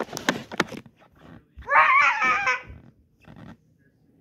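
Knocks and rustling from handling and jostling early on, then about a second and a half in a single high-pitched, wavering vocal cry lasting about a second.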